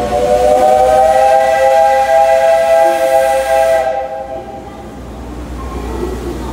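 Steam locomotive's whistle sounding at departure: a chord of several steady tones with a hiss of steam, held for about four seconds and then cut off.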